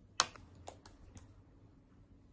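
Makeup being handled at a dressing table: one sharp click shortly after the start, as a powder compact is taken out and opened, then three lighter clicks and taps over the next second.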